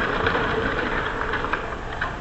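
Aggressive inline skates grinding along a concrete ledge: one long, steady scraping grind that fades out near the end.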